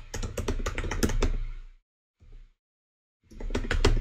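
Typing on a computer keyboard: a fast run of keystrokes for about two seconds, then a single keystroke and a second or so of silence.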